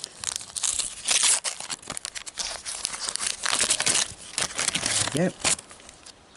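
Foil sticker packet being torn open and crinkled by hand, a dense run of crackling and sharp crinkles that dies down about five seconds in.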